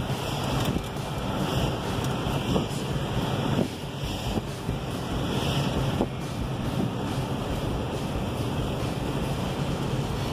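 Steady road noise inside a car's cabin while driving: an even rumble and hiss with a low hum and a few faint knocks.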